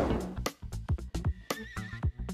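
Upbeat background music for the quiz: a steady beat of plucked notes and drum hits. The tail of a swelling whoosh fades out at the start, and a short wavering tone comes in near the end.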